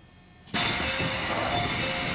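A sudden loud hiss of compressed air released from a train's pneumatic system as the train comes to a stop. It starts abruptly about half a second in and holds steady.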